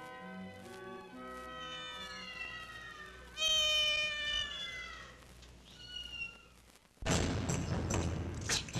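Film soundtrack of sustained music, then a cat's loud, long yowl that falls in pitch a little over three seconds in, followed by a second, shorter meow. About seven seconds in, a sudden loud, harsh noise cuts in.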